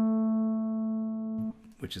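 Clean electric guitar chord ringing out through a MayFly Audio Sketchy Zebra vibrato pedal set to a very slow speed, so the waver in pitch is barely perceptible. The chord is muted about a second and a half in.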